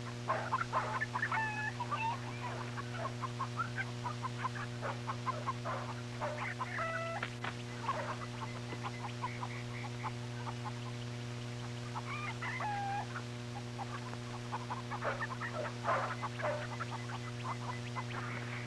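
Chickens clucking in short, scattered calls, thickest in the first couple of seconds and again around seven, thirteen and sixteen seconds in. A steady low electrical hum runs underneath.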